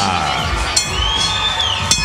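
Music with a steady beat playing over the arena over a cheering crowd, with a high tone gliding up and back down in the second half and two sharp clinks.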